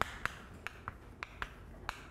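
Chalk writing on a chalkboard: about ten light, sharp clicks at irregular intervals as the chalk strikes and lifts off the board with each stroke.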